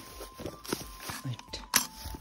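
Footsteps on grassy, brushy ground, heard as a few irregular knocks and rustles, with a brief low voice sound just past halfway.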